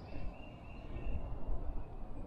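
Outdoor ambience: an uneven low rumble, with a faint steady high-pitched tone running through it.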